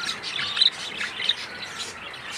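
Budgerigars chirping and chattering in a run of short, quick chirps as the pair mates, the loudest a little over half a second in.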